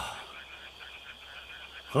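Faint night-time chorus of frogs calling, over a steady high insect drone.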